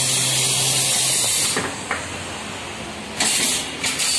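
A steady loud hiss with a low hum under it. The hiss drops away for about two seconds in the middle, with a couple of sharp clicks as it does, then comes back.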